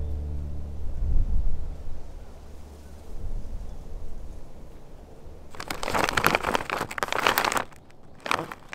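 Low wind rumble on the microphone, then a plastic snack bag of Dragon Potato crisps crinkling loudly as it is handled for about two seconds near the end.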